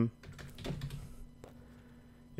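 Computer keyboard typing: a short run of light keystrokes that dies away after about a second.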